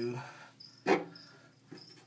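A red pen taps sharply against a clear plastic container about a second in, then more softly near the end. Faint, high, short chirps of a cricket repeat in the background.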